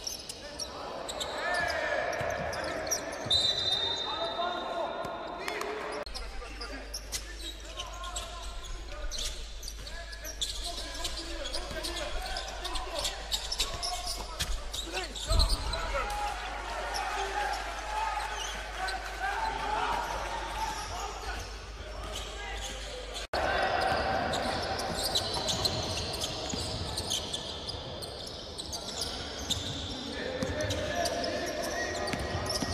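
Basketball game sound from inside an arena: the ball dribbling and bouncing on a hardwood court, with players' and spectators' voices echoing in the hall. There is one loud thump about halfway through, and the sound changes abruptly twice where the footage cuts.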